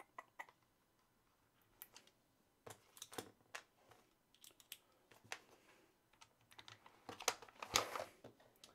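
Scattered small clicks and taps of metal screwdriver bits and a plastic bit case being handled as a bit is picked out and fitted to a precision screwdriver handle. The clicks come irregularly, a few at a time, and grow more frequent and loudest near the end.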